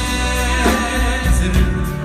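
Live Chassidic band music: a male lead singer singing over drums and keyboards.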